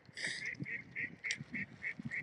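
Waterfowl calling in a quick run of short, evenly spaced notes, about four a second, starting a moment in.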